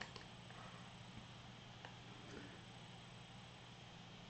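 Near silence: room tone with a faint steady low hum and a couple of faint clicks.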